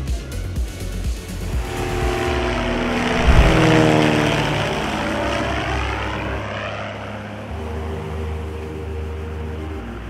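Single-engine light propeller plane flying low overhead: its engine and propeller drone swells to a peak about three and a half seconds in as it passes, then eases off to a steadier hum.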